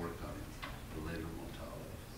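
A man's soft, halting speech, a quiet trailing-off and hesitation between words, with a few faint clicks.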